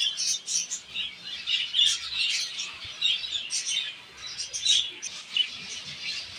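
A colony of zebra finches chirping: many short, high calls overlapping without a break.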